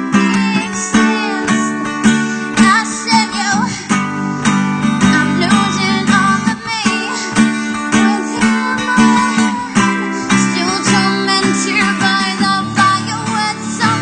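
Acoustic guitar strummed steadily, with a wordless sung line wavering over it in places, recorded on a phone.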